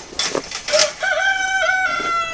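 A rooster crowing, ending on one long held note that starts about a second in.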